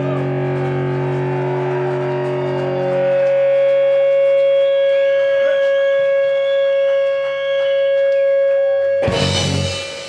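Live rock band ending a song: distorted electric guitar holds one long, steady note over the drums, then the band closes with a single loud hit of drums and cymbals about nine seconds in that rings out.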